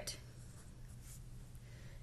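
Felt-tip pen drawing on paper, faint: a short arrow and a hand-lettered Q being drawn, over a steady low hum.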